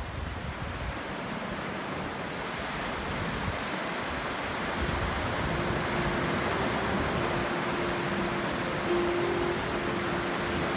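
Ocean surf washing onto a beach, a steady rush of noise with wind on the microphone, slowly growing louder. A faint held note comes in about halfway through.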